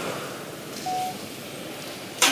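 A single short electronic beep, one steady tone lasting about a third of a second, about a second in, over room hiss.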